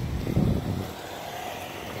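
A car passing on the street: a low rumble that swells about half a second in and then fades to steady traffic noise.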